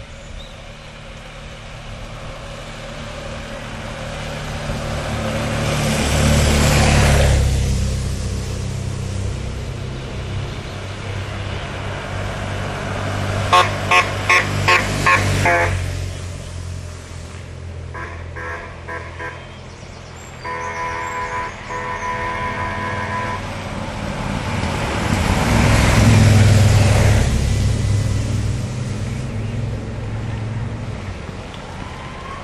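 Race escort motorcycles and vehicles passing close with engines running, swelling and fading twice. About halfway through a horn sounds five quick toots, followed by a few shorter beeps and a longer held horn note.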